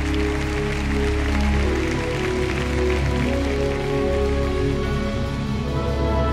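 Slow orchestral introduction: a string orchestra holds chords that change every second or so over a steady low bass note, with a hiss of audience applause underneath.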